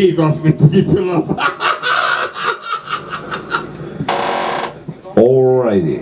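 Voices talking and laughing in a small room, with a short burst of hissing noise lasting about half a second, about four seconds in.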